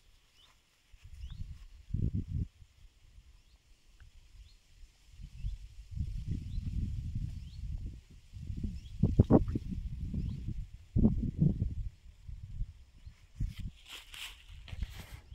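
Wind buffeting the microphone in irregular low gusts, loudest about two seconds in and again around nine to twelve seconds. Faint high chirps keep on steadily underneath.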